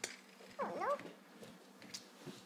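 A toddler's short high-pitched vocal squeal, its pitch rising and falling, about half a second in, with a couple of faint clicks around it.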